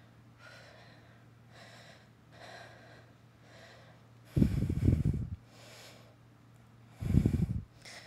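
A woman breathing hard from exertion during leg lifts: soft breaths about once a second, with two loud, low puffs of breath, the first about four and a half seconds in and the second about seven seconds in.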